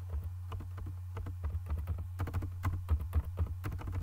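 Computer keyboard keys being typed, a quick, irregular run of clicks as text is spaced and aligned in a code editor, over a steady low hum.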